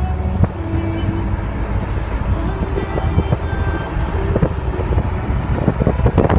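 Steady low road rumble of a moving car, with music playing over it.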